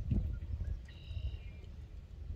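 Block-and-tackle rope hoist on a sailboat's outboard motor bracket being worked, giving a brief high squeak about a second in, over a low rumble.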